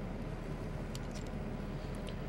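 Quiet room tone: a steady low hum and hiss, with a few faint clicks about a second in and again near the end.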